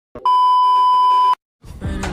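A single steady electronic beep about a second long, with silence just before and after it. Music starts again near the end.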